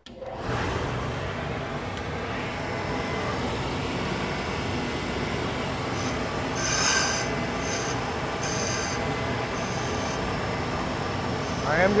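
A Hybco relief grinder's spindle and shop dust collector running steadily while the wheel is dressed at 45 degrees with a diamond dresser. A few brief, higher-pitched hissing bursts about halfway through mark the diamond touching the spinning wheel.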